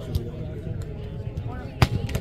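A volleyball struck hard by hand, a single sharp slap just before the end, with a lighter touch on the ball at the start, over faint voices of players and onlookers.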